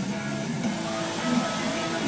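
Background music with steady held notes.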